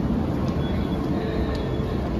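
Steady low rumble and hum of an underground metro station, with a few faint clicks over it.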